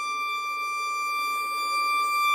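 Solo violin holding a single high, pure bowed note that stays steady in pitch and slowly grows louder.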